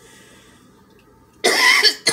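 A woman coughing once, a loud, harsh cough about one and a half seconds in after a short quiet pause.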